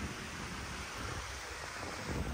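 Steady wind blowing across the microphone: a soft, even hiss with low buffeting underneath.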